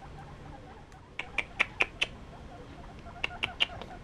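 Young guinea pigs giving short, sharp squeaks: a quick run of about five about a second in, then four more after a pause.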